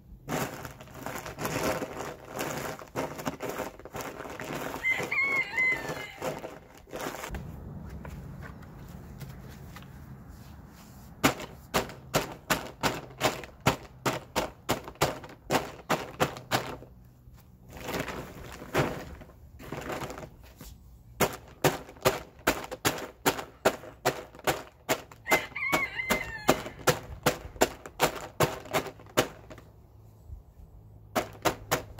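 Lump charcoal being crushed in a chicken feed bag: crunching under stamping feet at first, then, after a short lull, rapid sharp blows of a long-handled tool pounding the bag, about three a second. A chicken calls briefly twice.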